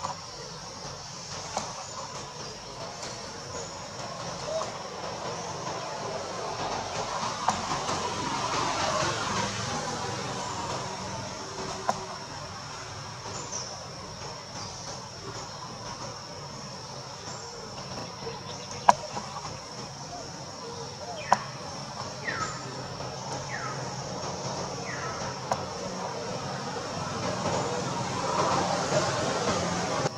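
Long-tailed macaques calling while they play and groom: several short falling squeaks in the second half, and louder stretches of noisy calling near the start and at the end. A steady high-pitched drone and a couple of sharp clicks run underneath.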